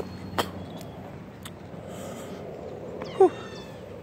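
A single short animal cry about three seconds in, dropping sharply in pitch, over a steady outdoor background hiss.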